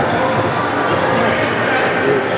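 Indoor futsal game: shouts of players and onlookers echoing around a large sports hall, with thuds of the ball and feet on the wooden court.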